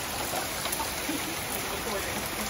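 A heavy rain shower: a steady hiss of rain falling on grass, pavement and parked cars.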